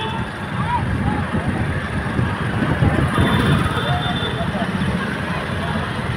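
Street procession din: a mix of crowd voices over a heavy, steady low rumble from the vehicles and sound equipment, with a brief high steady tone about three seconds in.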